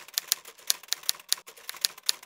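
Typewriter sound effect: sharp, slightly uneven key clacks at about six a second, as if typing out a line of text.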